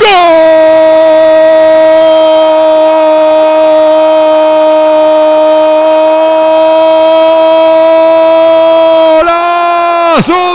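A radio football commentator's long, held goal cry, one loud note sustained at a steady pitch for about nine seconds, rising a little near the end. It marks a goal just scored.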